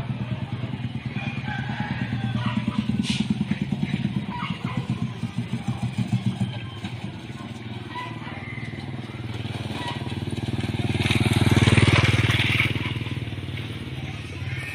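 Small motorcycle engines running: a pulsing engine note for the first six seconds or so, then a motorcycle approaching and passing close, loudest about twelve seconds in before fading.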